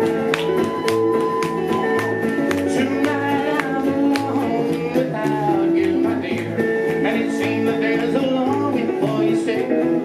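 Live band playing a song: a strummed acoustic guitar, an electric guitar lead line and an upright bass over a steady beat.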